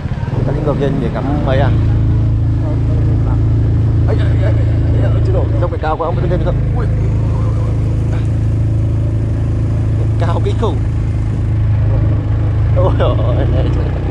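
A motorbike engine running steadily on the move, a low drone with wind and road noise. A man's voice breaks in briefly a few times.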